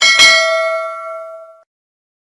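Bell notification sound effect: a bell struck, with a second strike just after, ringing with several clear tones that fade out over about a second and a half.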